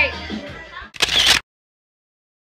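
Party voices and music fade, then about a second in comes a single short camera shutter sound, after which the audio cuts off abruptly.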